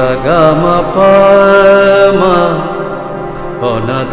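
Harmonium playing with a man singing a held, ornamented melodic line in raga Patdeep. The voice slides through quick turns near the start and again about two seconds in, over a sustained note.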